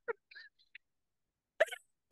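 Soft, broken laughter: a few short breathy laugh sounds, with a louder one near the end.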